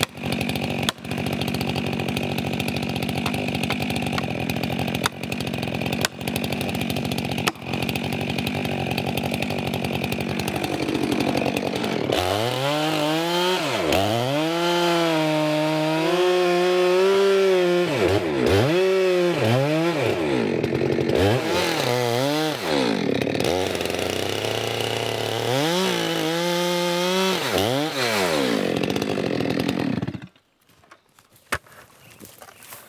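Chainsaw running at a steady low speed for about the first twelve seconds, with a few sharp knocks. It is then throttled up to cut into a large spruce trunk, its engine pitch rising and sagging again and again as the chain is fed into the wood. The sound cuts off suddenly right at the end.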